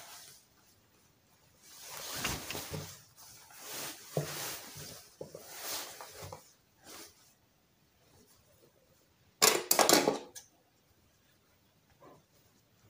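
Scissors trimming seam allowances, with the rustle of net and satin fabric being handled through the first half. A short, loud run of sharp snips and clacks comes about nine and a half seconds in.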